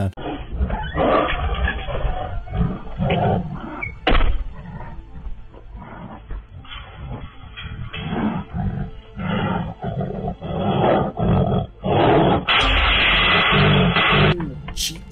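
A tiger roaring in irregular bursts, with a sharp knock about four seconds in and a louder, dense stretch near the end.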